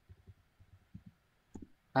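Faint, muffled computer keyboard typing: a run of soft, irregular taps, with a sharper click about one and a half seconds in.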